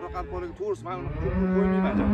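A cow mooing: one long, low moo that starts about a second in.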